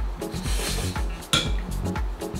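A glass bottle of carbonated kombucha being opened by hand: a short hiss of escaping gas about half a second in, then a sharp glassy clink, over background music with a steady beat.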